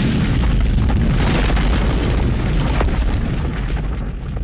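Sound effect of a logo reveal: a heavy, sustained boom and rumble of crumbling masonry with crackling debris, easing slightly near the end.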